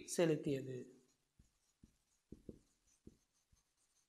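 Marker pen writing on a whiteboard: about six short, faint strokes and taps as letters are written, after a brief spoken word at the start.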